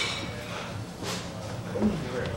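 Bar-room noise between songs: low background chatter with a short clatter about a second in.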